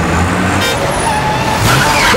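Busy road traffic: engines and tyres running in a steady wash, with a short horn toot under a second in.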